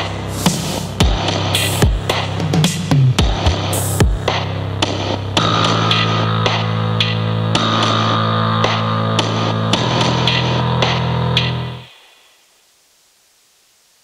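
Instrumental ending of an alt-rock song: the band plays on with steady drum hits, then about five seconds in settles into one long held chord with drum strikes over it, which stops near the end.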